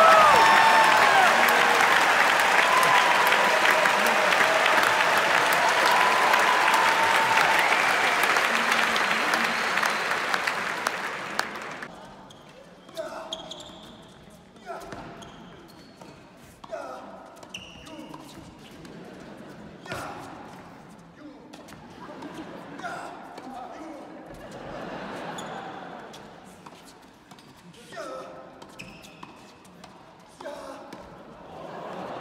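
Crowd cheering and applauding loudly, with voices rising above it, dying away about twelve seconds in. After that come tennis balls struck by rackets and bouncing on the court every second or two, echoing in the large hall, with scattered voices.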